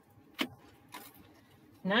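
Pieces of scored card being handled on a cutting mat: one sharp tap about half a second in, then faint handling noise.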